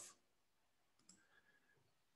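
Near silence, with one faint short click about a second in.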